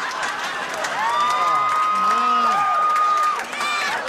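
Studio audience cheering and applauding, with one long, high-pitched whoop held for about two seconds in the middle.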